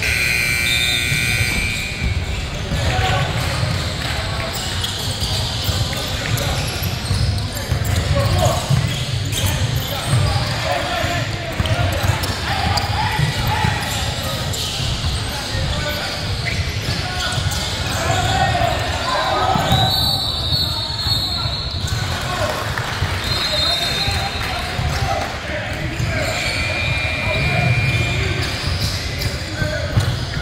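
Basketball bouncing and dribbling on a hardwood gym floor, with footfalls, brief high sneaker squeaks now and then, and indistinct voices of players and spectators, all echoing in a large hall.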